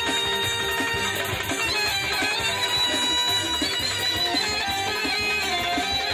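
Live band music: a saxophone carries a sustained, winding melody over a steady low beat.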